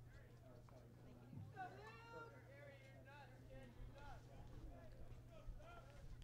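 Near silence: faint, distant voices over a low, steady hum.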